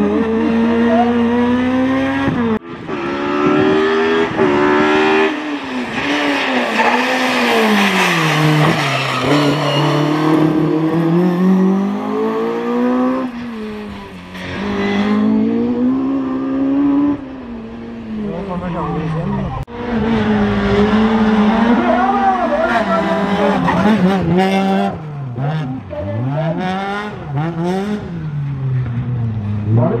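Ford Fiesta rally car engines revving hard, the pitch climbing and dropping again and again through gear changes, in several separate runs with sudden cuts between them, about two and a half seconds in and again near twenty seconds in.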